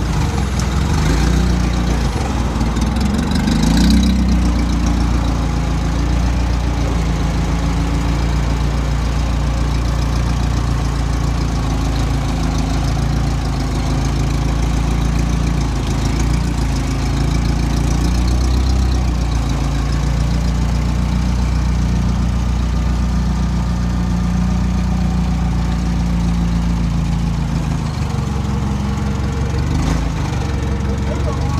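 Propane-fuelled Caterpillar forklift engine running steadily while carrying a car on its forks, revving up briefly a few seconds in.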